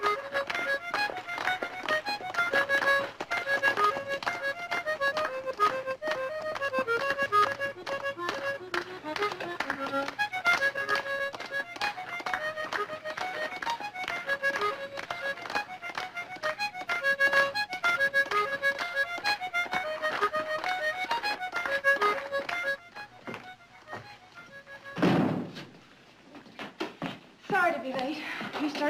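A quick, lively accordion tune played in a steady rhythm, which stops about 23 seconds in. A single short, loud burst follows about two seconds later.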